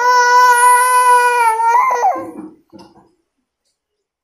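Young baby's voice: one loud, long cry-like squeal held on a steady pitch, bending up and falling away after about two seconds, followed by a short low grunt.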